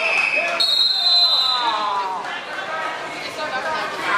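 Voices shouting in a gym. Over them come two steady whistle tones back to back: a high one ending about half a second in, then a higher one lasting about a second and a half.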